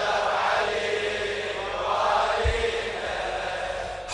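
A crowd of men chanting the refrain together in response, heard faint and echoing, with one low thump about two and a half seconds in.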